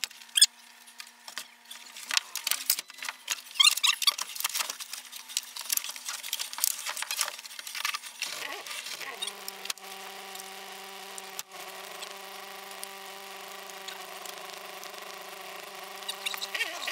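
Inside a Volkswagen MKII Jetta rally car pulled up on a gravel road: a run of clicks, rattles and squeaks for about the first half, then a steady hum of the engine idling for the rest.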